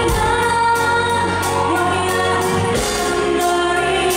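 A woman singing a pop song live into a microphone, backed by a band.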